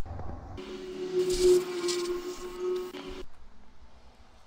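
Air blower running for about three seconds, a steady motor hum under a rush of air, blowing the circuit board clean. It starts about half a second in and cuts off suddenly.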